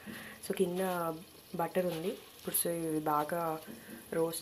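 A person talking, with a faint steady high hiss underneath.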